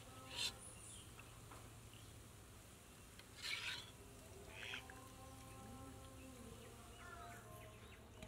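Faint, with three short scrapes of a metal slotted spoon against an aluminium frying pot and a steel bowl as fritters are lifted out of the oil: one about half a second in, the loudest around three and a half seconds, and one near five seconds.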